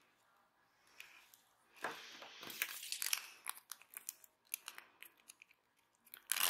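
Faint rustling and crinkling of a plastic strip of adhesive half-pearl beads being handled, followed by a run of light clicks and ticks.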